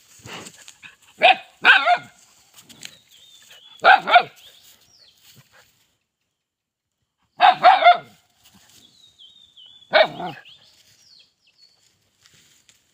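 A small dog barking in short bouts a few seconds apart: two barks, then two more, then a quick run of three, then a single bark.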